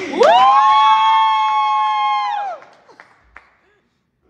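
Two voices let out a long, high-pitched celebratory cry together. It sweeps up, holds steady for about two seconds, then drops away, greeting the exchange of wedding vows.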